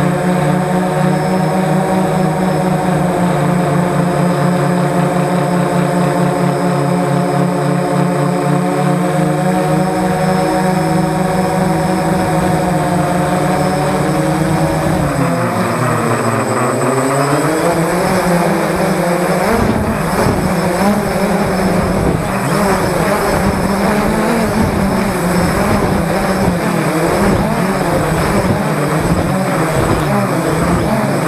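A multirotor drone's electric motors and propellers whining steadily, heard close up from on board. About halfway through the pitch dips and climbs back as the motor speed changes, and after that it wavers unevenly.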